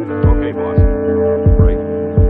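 A sampled hip-hop beat plays back: a deep kick drum, its pitch falling on each hit, strikes several times over sustained chords chopped from a 1970s film soundtrack.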